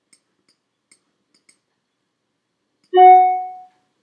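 A few faint computer mouse clicks, then about three seconds in a single loud chime-like note that rings and dies away in under a second.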